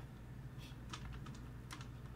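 A few faint, irregularly spaced small clicks over a steady low hum.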